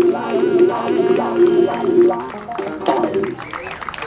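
Saxophone playing a short closing phrase over an electric bass, the music ending a little over two seconds in, followed by crowd voices.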